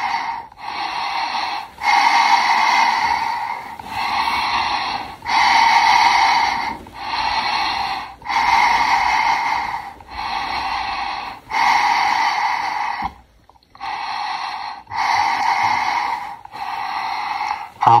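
Breathing through an Avon M50 gas mask, picked up and made louder by its powered voice amplifier: a steady succession of breaths in and out, each lasting one to two seconds, with a short pause a little past the middle.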